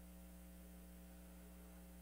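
Near silence with a steady electrical mains hum from the open microphone and broadcast sound system.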